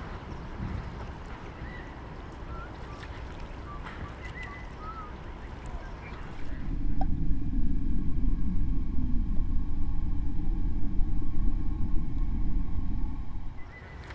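Open-air ambience with wind noise and a few faint short whistles, then from about halfway a louder, muffled low rumble of water heard through a submerged camera housing.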